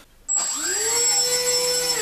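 Electric pusher motor and propeller of a Bixler RC glider spinning up with a rising whine, holding a steady pitch with a thin high tone above it, then starting to wind down at the end.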